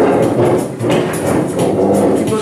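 Electronic keyboard playing, mixed with many people talking in a hall.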